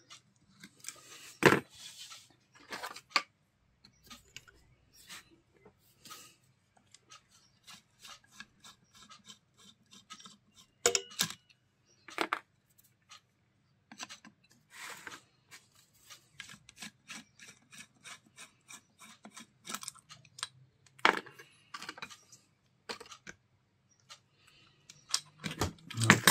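Small hand tools clicking and scraping on the metal rear housing of an Elmot 12 V alternator while its brush holder and wiring are worked on: irregular light taps and scrapes, with sharper knocks about a second and a half in, around eleven seconds in and around twenty-one seconds in.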